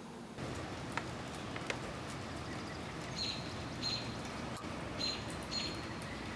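A small bird chirping, four short high chirps in the second half, over a steady outdoor hiss, with two sharp ticks about a second in.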